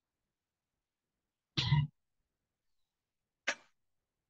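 A single short cough about one and a half seconds in, followed by a brief sharp sound near the end, with dead silence in between, heard through an online video call.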